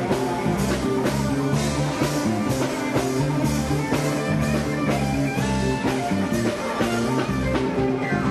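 Live band playing loud dance music: guitar and bass over a steady drum beat, with no vocals.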